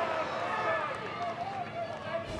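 Football stadium ambience: a steady murmur of crowd and player voices from the ground.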